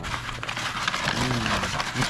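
Brown paper grocery bag crinkling and rustling in quick irregular crackles as gloved hands pull it open and unwrap a heavily wrapped object.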